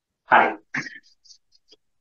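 A man's brief vocal sound, a short throat-clearing "hā", about a third of a second in, followed by a second shorter one. Faint scattered sounds follow.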